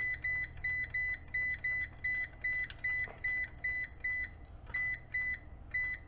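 EG4 6000EX-48HV inverter's front-panel keypad beeping at each button press as its settings menu is scrolled: short, identical beeps about three a second, a brief pause a little over four seconds in, then a few more. A steady low hum lies underneath.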